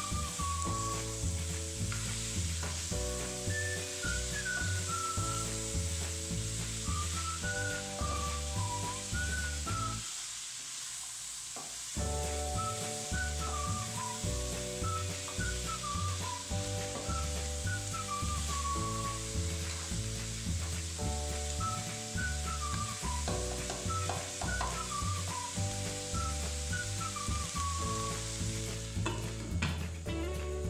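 Cabbage, carrots and shrimp sizzling as they sauté in a steel pot, stirred with a plastic spatula, under background music with a high melody and steady bass. The music drops out briefly about a third of the way in, leaving only the sizzle.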